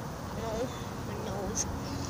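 A flying insect buzzing near the microphone: two short, wavering buzzes, with a sharp click near the end.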